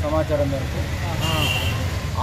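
A man speaking in short phrases over a steady low rumble, with a brief high thin tone a little past halfway.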